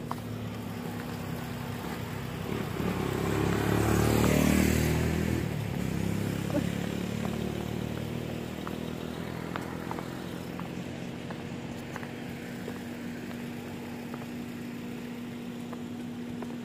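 A motor vehicle driving past on a road, its engine growing louder to a peak about four to five seconds in and then slowly fading away, over a steady low hum.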